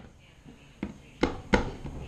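Hands handling a roll of candy dough on a wooden cutting board: three short knocks in quick succession starting about a second in, the last two louder.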